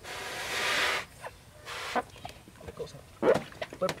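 A long breath blown into a rubber balloon, building over about a second. Then scattered small rubbery sounds, and short squeaky sounds that crowd together near the end.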